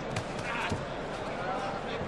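Boxing-arena background noise with faint crowd voices and two dull thuds from the ring in the first second, such as gloves landing or feet on the canvas.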